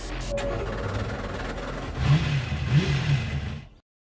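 Car engine revved in three quick blips, its pitch rising and falling each time, over a steady low hum; the sound cuts off near the end.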